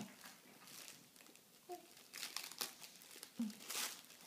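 Foil gift wrap crinkling faintly as it is handled and unwrapped, in a few short spells, the loudest near the end.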